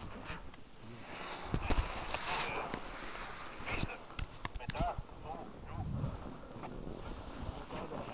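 Faint, indistinct voices in the background, broken by scattered short knocks and scuffs.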